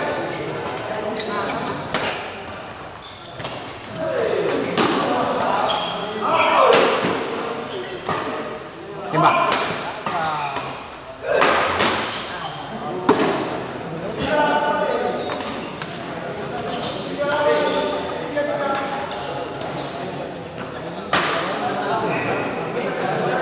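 Badminton rackets striking a shuttlecock during a doubles rally: a series of sharp smacks that echo in a large hall, over continual voices of players and spectators.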